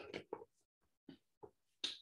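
Quiet handling of paper notes: a few faint, scattered clicks and rustles as a page is turned.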